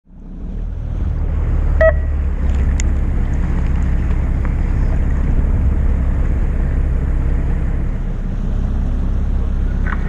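Steady low rumble of a fishing boat at sea, wind on the microphone and boat engine together with water, fading in at the start. A single short beep-like tone sounds about two seconds in.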